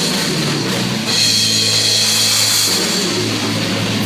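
Live rock band playing an instrumental passage: a Pearl drum kit with ringing cymbals over electric guitars and bass guitar, with no singing. The cymbals swell up about a second in.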